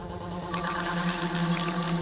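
Quiet breakdown passage of a hardstyle track: a sustained low synth note with faint higher chord tones, slowly getting louder.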